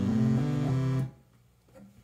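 Moog Grandmother analog synthesizer playing a short run of a few pitched notes. The sound cuts off abruptly about a second in.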